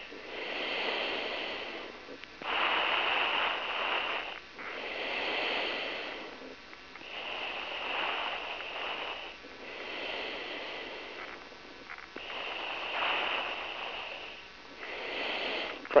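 A driver's slow, regular breathing picked up close on a helmet or radio microphone, each inhale and exhale a soft rush lasting about two seconds, with short pauses between.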